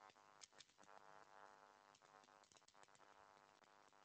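Near silence, with very faint music held on steady tones and scattered light clicks.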